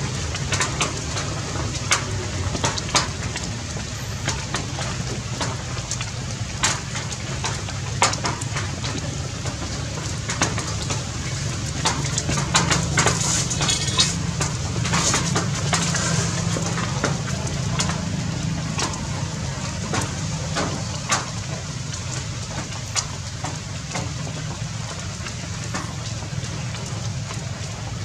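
Outdoor ambience: a steady low rumble under scattered sharp clicks and crackles, which come thickest about halfway through.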